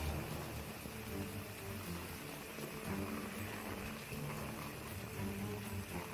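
Heavy rain pouring onto a flooded street: a steady, even hiss of rain and water, with quieter background music underneath.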